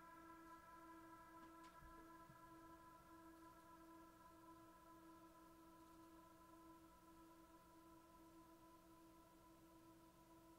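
Near silence, with a faint steady hum of several held tones, one of them gently pulsing.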